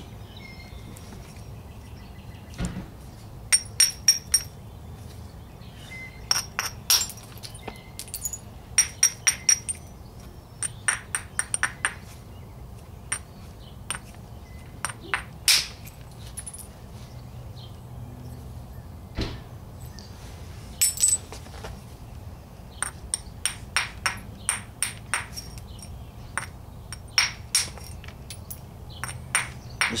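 Quartzite hammerstone tapping and rubbing the edge of an Edwards chert biface: quick clusters of sharp stone-on-stone clicks with a glassy ring, the kind of edge battering and abrasion that prepares striking platforms. A few heavier single knocks stand out among them.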